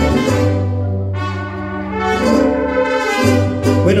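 Mariachi band playing, with trumpets carrying the melody over guitars and a steady low bass line.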